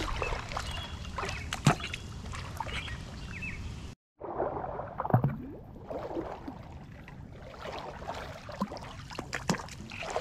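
Legs wading through shin- to knee-deep floodwater, the water sloshing and splashing in irregular strokes with each step. The sound drops out completely for a moment about four seconds in, then the sloshing carries on more softly.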